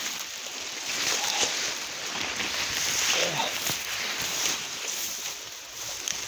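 Spruce branches brushing and rustling against the body while someone pushes through them on foot over dry forest litter.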